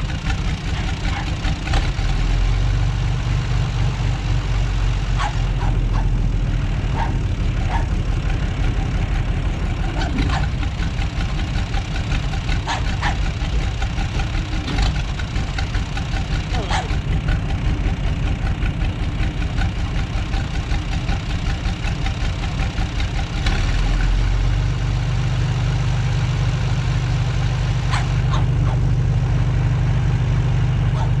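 John Deere farm tractor's diesel engine running steadily, coupled by its PTO to a dynamometer; the engine note steps up about two seconds in and grows louder again near the end.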